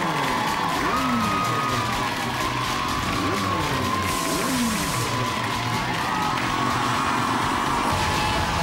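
Music playing with a studio audience cheering and whooping over it, and a short burst of hiss about four seconds in.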